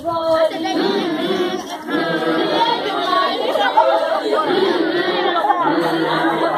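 A group of children's voices singing unaccompanied, mixed with chatter, the many voices overlapping; a note is held near the start and the sound briefly dips about two seconds in.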